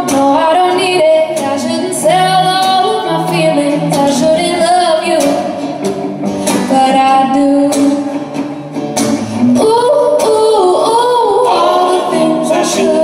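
Live acoustic song: a woman singing lead over two strummed guitars.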